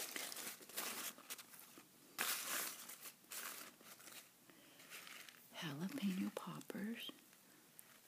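Paper burger wrapper crinkling and rustling in several bursts over the first few seconds as it is peeled off a burger.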